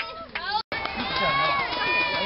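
Several children's voices shouting and calling out at once, with some long held calls. The sound drops out briefly about two-thirds of a second in.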